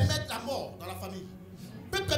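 A voice over a microphone, with background music holding steady low notes beneath it.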